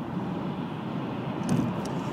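Steady car-cabin road and engine noise from a moving car, a low rumble, with two light clicks about a second and a half in.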